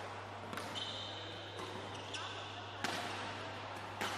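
Badminton rally in a large hall: sharp, echoing cracks of rackets striking the shuttlecock, about one a second, the loudest near three seconds in. A high squeak, typical of a court shoe on the floor, lasts nearly a second shortly after the start.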